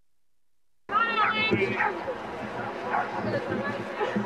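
A second of dead silence, then high-pitched voices shouting and calling out, the first a sharp cry that glides up and down, followed by shorter calls and chatter.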